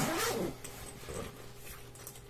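The large main zipper of a backpack being drawn open, a rasping run of zipper teeth, loudest in the first half second and fainter after.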